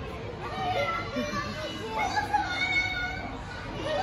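Children at play: many young voices calling out at once, overlapping, with no single voice standing out.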